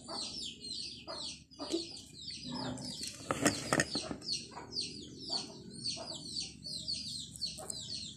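Birds chirping continuously: a rapid run of short, falling, high-pitched chirps, several a second. A couple of sharp knocks come about three and a half seconds in.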